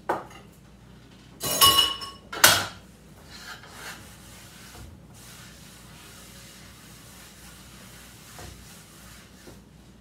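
Kitchen clean-up: a ringing clink of kitchenware and a sharp knock come close together about two seconds in. Then a crocheted cotton dishcloth wipes faintly over a wooden cutting board.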